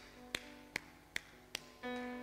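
Four sharp hand claps, evenly spaced a little under half a second apart, over soft sustained keyboard chords; a louder chord comes in near the end.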